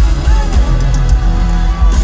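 Live band music: an acoustic guitar and a drum kit playing a steady beat, with a singer's voice in the mix.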